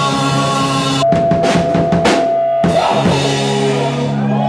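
Live rock band playing, with electric bass and drum kit. About a second in, the held notes drop out, leaving drum strikes under one sustained note; the full band comes back in a little before the end.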